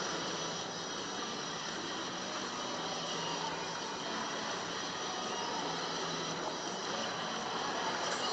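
Steady hiss of an indoor swimming-pool hall: ventilation and water noise.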